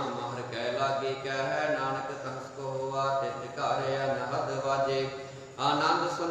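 A man's voice reciting Gurbani in a chanted, sing-song style, holding long syllables in phrases of about a second with short breaks between them, over a steady low hum.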